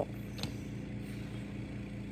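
Steady low background hum, like a household appliance or fan running, with one faint click about half a second in.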